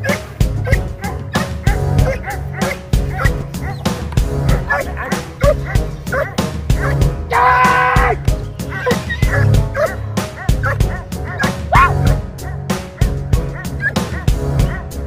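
A dog barking again and again as a protection-training decoy agitates it, over background music with a steady beat; just past the middle comes one longer, drawn-out high cry.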